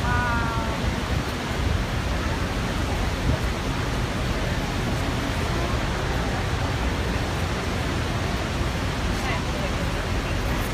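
Steady roar of the American Falls at Niagara heard close up from a tour boat, a continuous rush of falling water with a low rumble underneath. A short call rings out at the very start, and passengers' voices come through faintly now and then.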